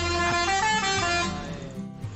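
Multi-tone musical air horn of a bus (an Indonesian "telolet" horn) playing a short tune of stepped notes, which fades out after about a second and a half.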